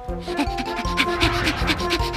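Cartoon sound effect of an ostrich's feet running fast on sand: a quick, even run of footfalls, several a second, over background music.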